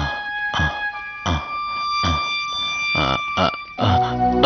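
Sustained, steady synthesizer tones of a dramatic background score, with a man's strained, gasping vocal breaths repeating every half second to a second over it.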